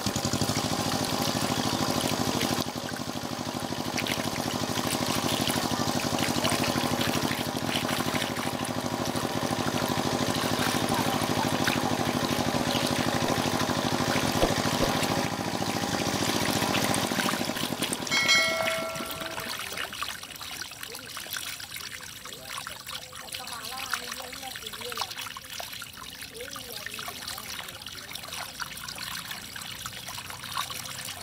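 Muddy water pouring and trickling through a channel in a mud bank, with small fish splashing in the shallow flow. A steady hum runs over the water for about the first eighteen seconds and then stops, just after a short chime.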